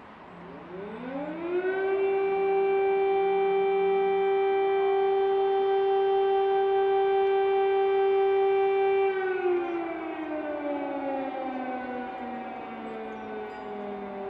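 Air raid siren winding up over about two seconds to a steady wail, holding its pitch, then slowly winding down from about nine seconds in.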